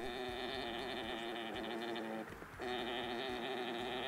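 Male alpaca orgling while mounted on a female during mating: a long, steady droning call, then a second one after a short break about two seconds in. This call is what triggers the female's ovulation.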